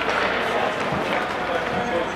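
Indistinct voices calling out, echoing in an indoor ice hockey arena over a steady din of rink noise.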